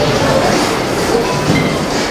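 Loud, steady din of a busy buffet dining room: many voices mixed with clatter, with music underneath.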